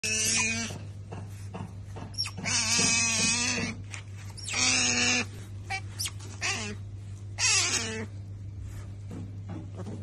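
An otter calling in a series of about five loud, high-pitched squealing calls, each wavering in pitch and lasting from half a second to over a second, demanding food. A steady low hum runs underneath.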